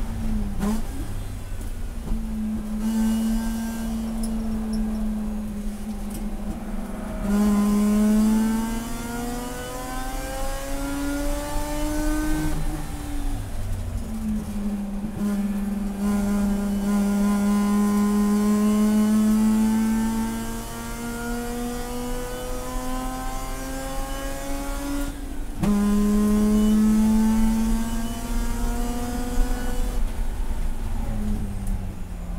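Rotary-engined race car heard from inside the cabin, running at full throttle: the engine note climbs steadily in pitch as the car accelerates, falls away under braking for a slow corner about halfway through, then climbs again. There is a sudden drop in pitch at an upshift near the end.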